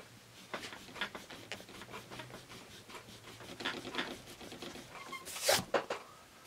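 Milan eraser rubbing on graph paper, erasing soft B-grade pencil graphite: a run of faint quick scrubbing strokes, then a louder swish about five seconds in.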